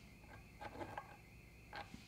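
Faint handling noise: a few soft taps and rustles as a hand works over the back of a Stratocaster body at the neck-screw holes, with a last small tap near the end.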